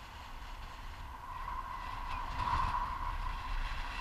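Wind rushing over an action camera's microphone during a tandem paraglider flight, growing louder about halfway through.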